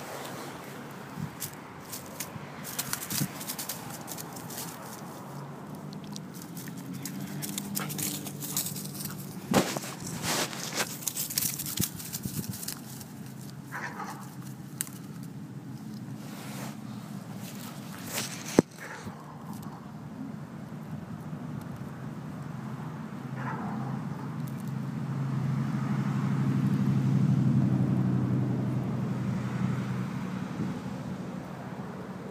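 German shepherd chewing on a wooden stick: irregular cracks and crunches, thickest in the first half. Underneath runs a low steady rumble of road traffic that swells as a vehicle passes near the end.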